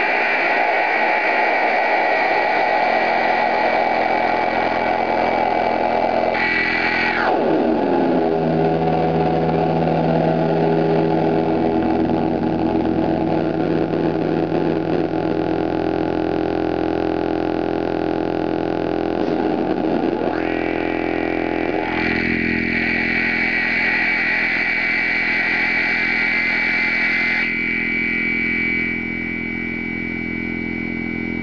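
Electronic feedback drone from a self-input rig: a Behringer Xenyx 802 mixer, ring modulator and amp with their outputs looped back into their inputs. Layered steady tones change as the mixer knobs are turned, with sweeping pitch glides near the start, about seven seconds in and about twenty seconds in, and a slight drop in level near the end.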